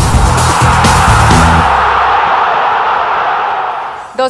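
Television news sports-section intro music with a heavy, driving bass beat, which stops about a second and a half in and gives way to a long rushing sound effect that fades out.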